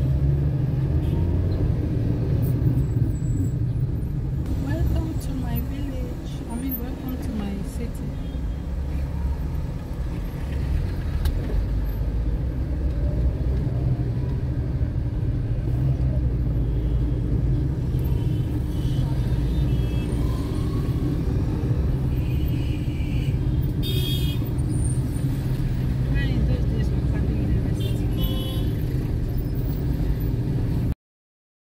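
Steady engine and road rumble of a car moving slowly through city traffic, heard from inside the car, with voices talking in the background.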